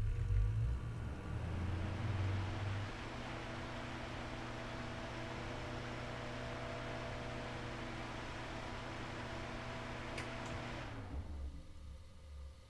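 Two SilentiumPC Stella HP ARGB 140 mm radiator fans of a Navis EVO ARGB 280 V2 liquid cooler running at their maximum speed: a steady rush of air with a faint hum. A heavier low rumble sits under it for the first three seconds, and the sound stops about eleven seconds in.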